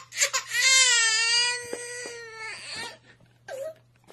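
Infant bursts into crying: a short sob, then one long wailing cry of about two seconds that trails off into quieter whimpers, with a brief last cry near the end.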